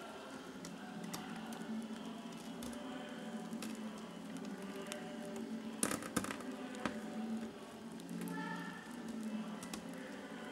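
Silkworm caterpillars chewing mulberry leaves: a faint, steady crackling patter, with a few sharp knocks about six seconds in.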